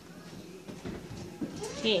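Faint voices murmuring in a quiet room, then one voice calls out a short, gliding "hey" near the end.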